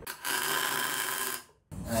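MIG welding arc laying a short tack weld on a steel tube, a steady hissing buzz that lasts about a second and then cuts off suddenly.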